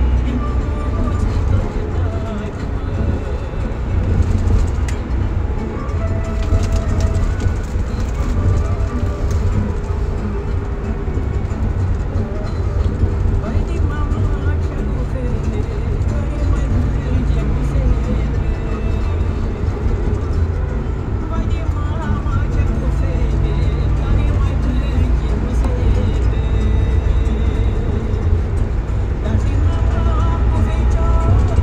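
Steady low engine and road rumble inside a passenger minibus driving on a country road, with indistinct radio voices and music faintly under it.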